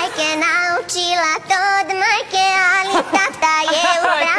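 A woman singing a melody, with held notes that waver in vibrato and short breaks between phrases.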